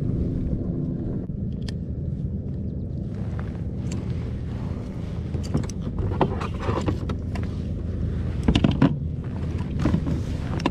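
Steady low rumble of wind on the microphone. From about five seconds in come scattered knocks and rattles as a landed bass is handled and set on a measuring board on the kayak's deck.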